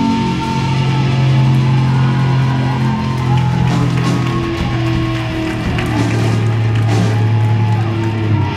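Live rock band playing: electric guitars over a drum kit, with a long held low note and higher guitar notes that bend and waver.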